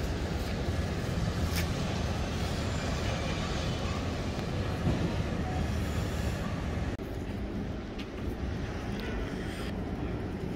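Steady low rumble of city street background noise, with no distinct events standing out.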